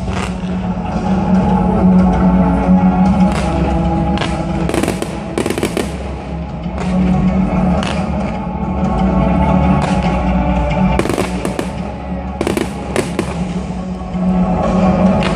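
Fireworks bursting in a dozen or so irregular bangs, some close together in pairs, over music that plays throughout the display.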